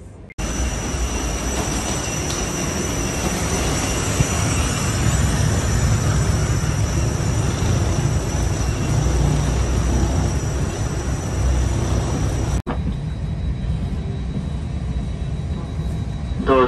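Steady noise of a parked jet airliner at the gate, heard from the jet bridge: a deep rumble with a high, constant whine. About twelve and a half seconds in it cuts to the quieter, steady hum of the cabin's air system.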